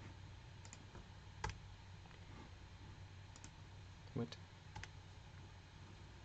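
A few faint, scattered computer mouse clicks over a steady low electrical hum, with a slightly fuller soft knock about four seconds in.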